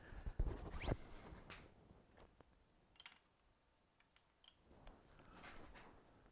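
A few light knocks and clicks of hand-worked metal parts at a lathe, strongest in the first second with a short rising squeak, then sparse faint ticks; no motor is running.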